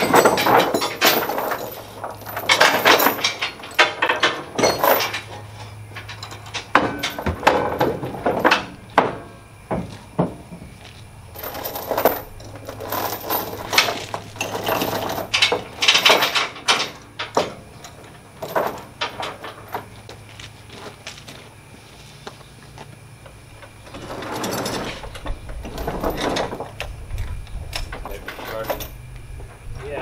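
Steel chains and rigging being handled on a trailer: irregular clusters of metallic clinks and clanks over a low steady hum, with a low rumble coming in near the end.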